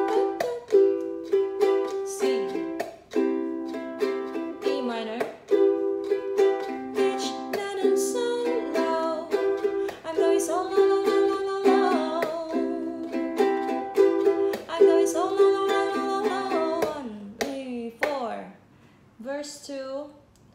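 Ukulele strummed in a steady rhythm, alternating E minor and C chords, with a woman singing along over the middle part. The playing stops shortly before the end.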